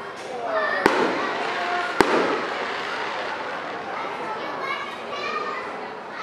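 Fireworks exploding overhead: two sharp bangs about a second apart near the start, the second followed by a brief rumbling echo. People talk in the background throughout.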